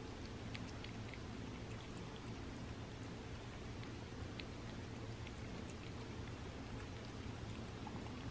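A cat lapping pureed chicken from a paper plate: faint, scattered small wet clicks of the tongue over a low steady room hum.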